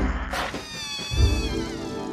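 Balloon squealing as its air escapes: a long, high, wavering whine that starts about half a second in. Music with heavy bass hits plays underneath.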